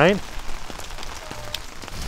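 Heavy rain falling steadily and spattering on wet pavement and surfaces.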